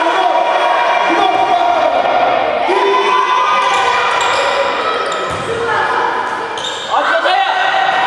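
Basketball bouncing on a sports hall floor during a youth game, with several voices calling out over it and echoing in the hall.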